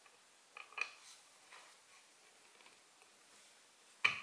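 A few faint metallic clicks of one-inch pocket-hole screws dropping into the pocket holes of a wooden board, bunched about half a second to a second in; otherwise near silence.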